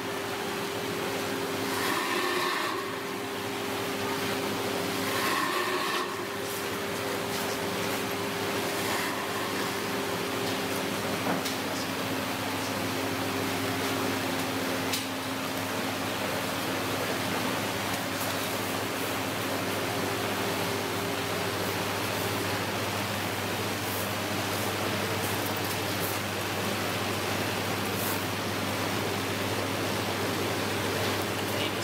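Steady rushing noise and mechanical hum of an aquarium facility's tank pumps and water inflow.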